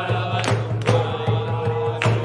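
A group of men singing a chant together, with a hand drum keeping a steady beat and sharp hand claps.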